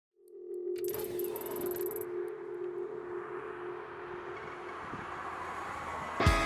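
Opening sound design: a steady synth drone with a swelling wash of noise, dotted with faint high ticks in the first couple of seconds, the drone fading out while the wash carries on.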